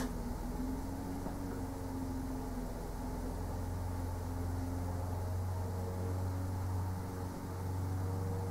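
Steady low hum of room background noise, with no distinct knocks or clicks.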